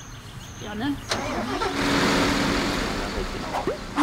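A sharp click, then about two seconds of loud rushing engine noise with a steady low tone under it, easing off near the end: the Ponsse forest harvester's diesel engine being started.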